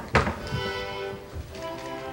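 Small accordion squeezed by an unskilled player: a knock just after the start, then a held chord of several reedy notes that changes to a different chord about a second and a half in.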